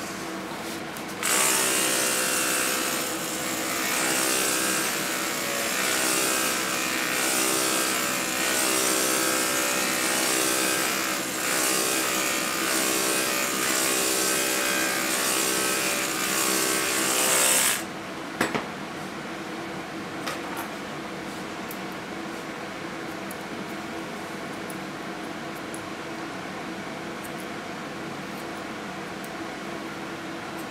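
Electric dog grooming clippers running while trimming fur on a Brittany spaniel's ear. The steady motor hum switches on about a second in and cuts off after about sixteen seconds, followed by a couple of small clicks.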